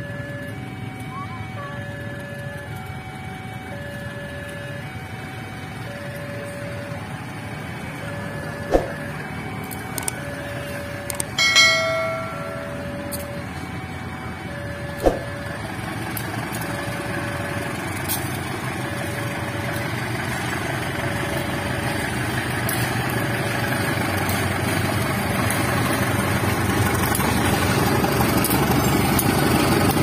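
Level crossing warning alarm sounding a repeating two-note chime while a diesel-electric locomotive hauling a passenger train approaches, its rumble growing steadily louder. A brief horn sounds about twelve seconds in.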